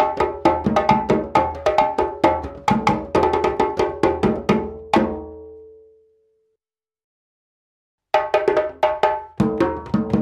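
Several djembes played by hand in a layered ternary groove that contains a second fundamental cadence, making it a type 2 ternary groove. The fast strokes stop about five seconds in on a last ringing note, and after about two seconds of silence a new djembe groove starts.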